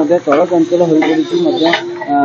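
A person speaking continuously, most likely the voice-over of the news report; no work sounds stand out over the voice.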